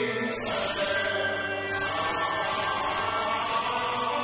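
Cantonese opera (yuequ) singing with instrumental accompaniment, the voice sustaining and bending long notes.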